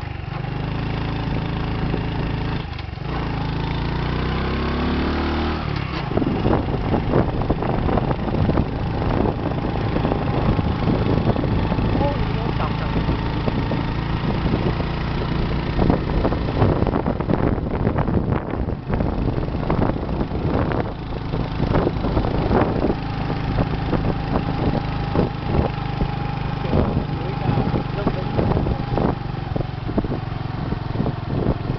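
Motorcycle engine running under way on the road, its pitch rising for a few seconds near the start and then holding steady, with frequent irregular buffeting from about six seconds in.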